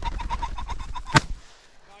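Flushing rooster pheasant giving a rapid run of harsh cackles for about a second, then a single 12-gauge over-under shotgun shot cuts in just after a second in.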